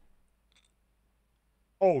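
Near silence with a few faint clicks of a card box being handled, then a man's startled 'Oh' just before the end.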